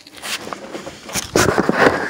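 Handling noise of a phone camera brushing and scraping against objects and fabric, with a few scattered clicks. It gets louder and denser about two-thirds of the way in.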